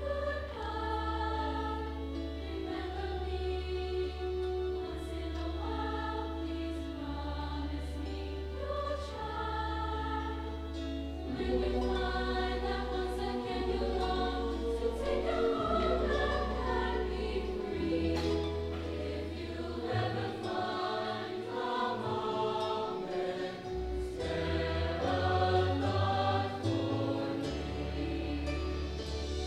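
Mixed high school choir singing a musical-theatre medley in parts over low, steady accompaniment notes that change with each phrase. The singing moves in phrases of a couple of seconds and grows fuller and louder about halfway through.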